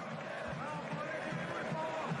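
Football stadium ambience heard through a TV match broadcast: a steady background hum of the ground with faint, distant voices.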